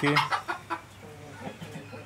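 Brahma chickens clucking: a few short clucks in the first second, then quieter.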